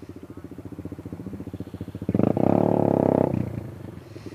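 Motorcycle engines idling with an even beat; about two seconds in, a motorcycle revs loudly for about a second as it pulls away, then the sound drops back to idling.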